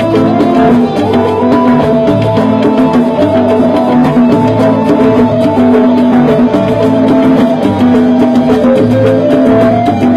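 Live cumbia band playing an instrumental passage: congas and other hand percussion keep a fast, steady beat under held melody notes.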